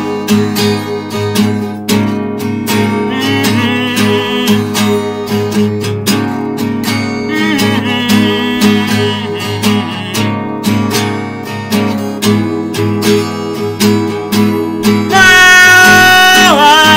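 Acoustic guitar strummed steadily and hard in a fast, even rhythm. A man's voice comes in singing near the end.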